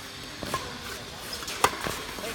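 Badminton rackets striking a shuttlecock in a rally: a light hit about half a second in, then a sharp, louder crack near the end followed closely by a smaller hit.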